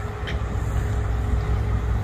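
Large mobile crane's engine running steadily under load as it hoists a rooftop unit, a constant low rumble.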